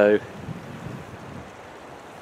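Steady wind noise on the microphone, after the end of a spoken word at the very start.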